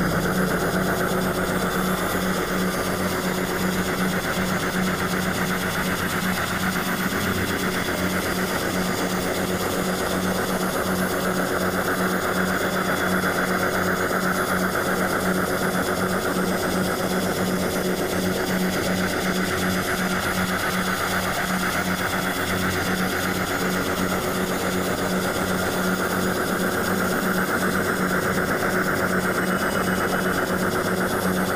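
Industrial noise music: a steady, machine-like low drone that pulses rapidly and evenly, with a constant hiss above it.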